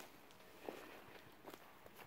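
Faint footsteps on lawn grass, a few soft steps spaced out over the two seconds.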